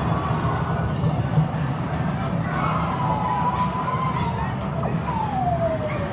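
Steady arcade din of many machines running together. Over it, electronic game tones glide slowly in pitch, rising and then falling away near the end, much like a siren.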